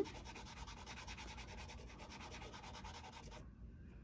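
A green Girault soft pastel stick rubbed quickly across gray paper, a faint scratchy swatching sound made of many rapid strokes that stops about three and a half seconds in.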